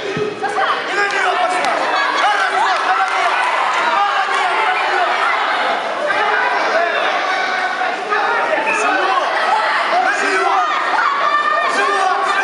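Spectators in a sports hall shouting and calling out encouragement all at once, many voices overlapping without a break.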